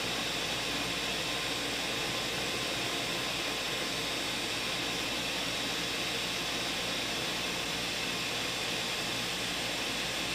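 Ninja countertop blender running steadily, its motor whirring as it blends a smoothie of strawberries, leafy greens and almond milk.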